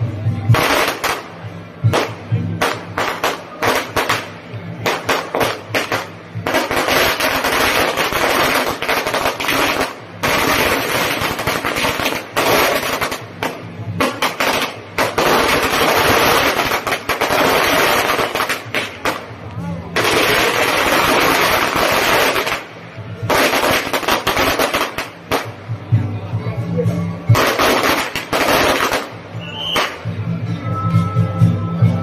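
Strings of firecrackers going off in long runs of rapid, continuous crackling, with brief pauses between the strings.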